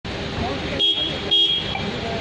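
Two short vehicle horn toots, the second longer, over steady traffic noise.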